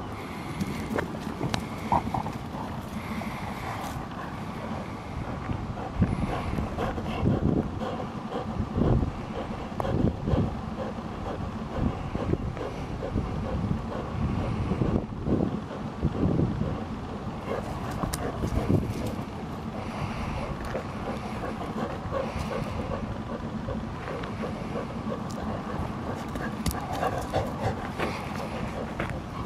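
Two Labrador retrievers tugging and scuffling over a rubber ball on dry grass, with irregular bumps and rustling that come in clusters through the middle.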